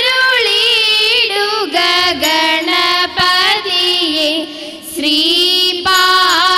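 Girls singing a slow, ornamented melody with long held notes, sung live into microphones as the song for a Thiruvathirakali group dance, with a short break between phrases just before the end.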